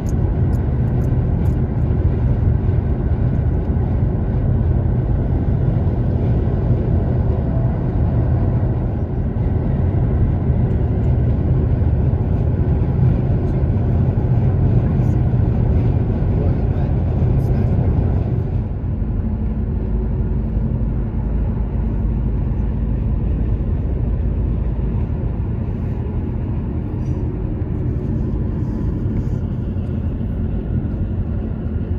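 Steady road and engine noise of a car cruising at highway speed, heard from inside the cabin as a low rumble. The sound eases slightly a little past halfway.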